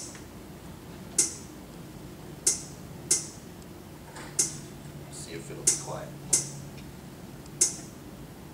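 Sharp percussive clicks from a fractions-teaching program playing its rhythm on a loop: three hits per cycle, repeating about every three seconds.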